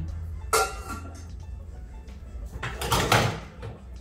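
Pots, lids and plastic containers knocking and scraping as they are pulled out of a kitchen cupboard: a sharp clatter with a brief ring about half a second in, and a louder rummaging clatter around three seconds in.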